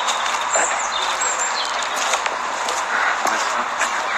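Steady outdoor hiss through a phone microphone, with scattered clicks and a few short high chirps.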